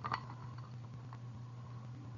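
Faint handling of a beaded stretch bracelet, with soft clicks of beads near the start and about a second in, over a steady low hum.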